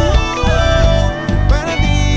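A live band playing an unplugged Latin pop song: a man singing over guitar, keyboard and a steady bass line.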